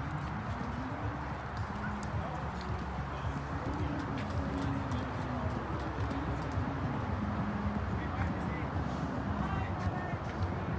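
Indistinct voices of people talking in the background, over a steady low rumble, with a few small clicks and taps.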